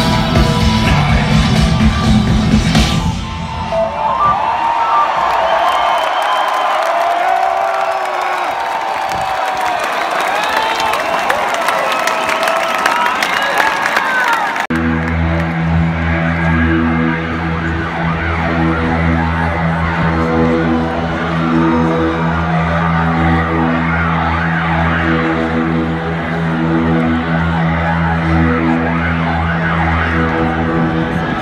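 Live heavy metal band finishing a song with full guitars and drums, then a crowd cheering, whoops and whistles. About halfway through, this gives way abruptly to a steady, pulsing synthesizer drone opening the next song.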